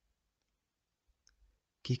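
Near silence in a pause of the speech, broken by a faint click about a second and a half in.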